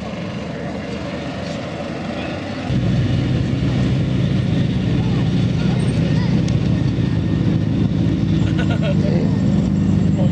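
Crowd chatter in the open air, then from about three seconds in a Nissan Skyline GT-R R34's twin-turbo inline-six idling steadily, much louder, at an even pitch.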